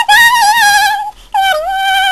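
A woman's voice singing high, wordless held notes unaccompanied, with a wide vibrato. One note breaks off about a second in and a new note starts with a short dip in pitch.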